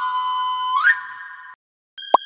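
Whistle-like tone of a logo jingle: a held note, a quick upward swoop just under a second in, then a steady note that cuts off suddenly about a second and a half in.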